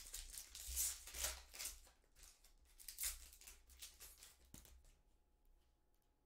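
Foil trading-card pack wrapper crinkling and tearing as it is opened and the cards are handled; the rustling comes in short runs over the first three seconds or so, then dies down.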